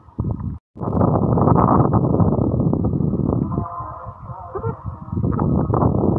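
Wind buffeting the microphone on an exposed hilltop: a loud, steady rushing rumble. It cuts out for a moment near the start and eases slightly about four seconds in.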